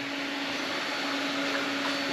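A large shop drum fan running: a steady whooshing noise with a constant low hum.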